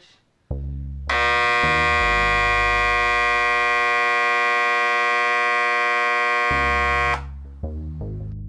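Microwave-oven transformer of a homemade spot welder switched on, giving a loud, steady buzz for about six seconds before it cuts off; the buzz comes from the transformer vibrating because it is not clamped down tightly enough. Electronic background music runs underneath.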